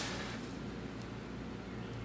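Quiet background room tone: a steady low hum under a faint hiss, with a brief click at the very start.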